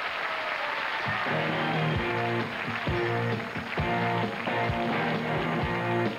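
Studio audience applause, then about a second in a rock band starts playing: electric guitars and bass over drums, with a drum hit roughly every second.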